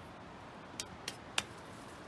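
Three short, sharp clicks about a third of a second apart, the last one the loudest, over a faint, even background.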